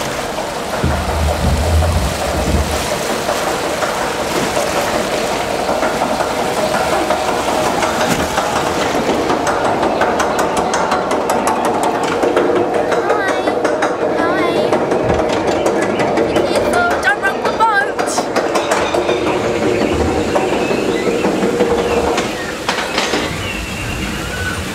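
Log flume boat moving along its water channel: a steady rush of churning water, with a rapid rattling clatter of clicks through the middle stretch.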